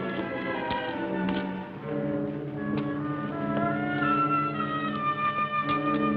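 Orchestral film score with brass holding long sustained notes. The chord changes about two seconds in, and higher notes enter near the end.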